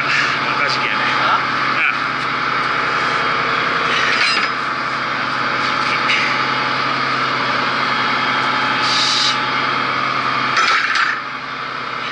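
A boat engine running with a steady low drone; it stops near the end.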